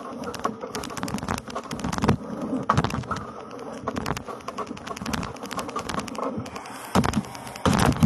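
Irregular clicks, knocks and rustling close to the microphone as a steam iron and clothes are handled on an ironing board. The loudest knocks come about two and three seconds in and again near the end.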